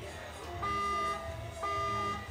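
Electronic buzzer signal sounding twice, two steady tones each about half a second long, a second apart.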